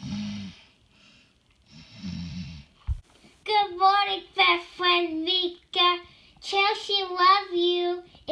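Two snores from a person voicing the sleeping doll, then a small bump, then from about three and a half seconds in a high, child-like voice singing in a sing-song with long held notes.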